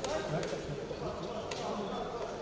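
Indistinct voices calling out in a boxing arena during a bout, over soft thuds from the boxers moving on the ring canvas. A single sharp smack comes about one and a half seconds in.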